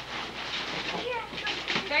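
Crinkling and tearing of gift-wrapping paper as a present is unwrapped, irregular and fairly soft, with faint background voices.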